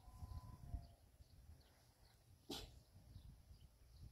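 Near silence: faint outdoor ambience with an uneven low rumble and faint high chirps. One short, sharp animal call comes about two and a half seconds in.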